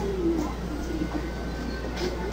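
A bird faintly cooing in a few low notes, the first gliding down, over a steady low background hum.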